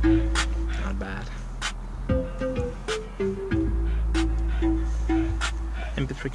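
Music with a steady beat and a strong bass line playing from the Kia Rio's factory stereo speakers inside the car.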